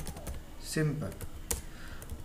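Typing on a computer keyboard: a handful of irregular keystroke clicks, the sharpest about one and a half seconds in.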